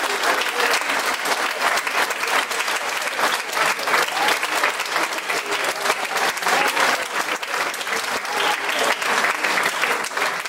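Audience applauding steadily, with dense, even clapping.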